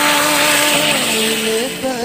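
Hot oil tempering (tadka) of fried onions and dried red chillies poured into dal in an aluminium pressure cooker, sizzling loudly as it hits the liquid. The sizzle starts suddenly and eases off after about a second and a half.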